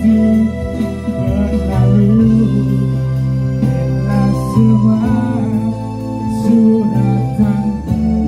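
Live song: a man singing while playing a Fender Stratocaster-style electric guitar, over a sustained low bass accompaniment that comes in about two seconds in.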